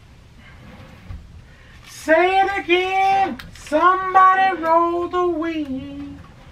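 A voice singing a short phrase of held notes that step downward, starting about two seconds in.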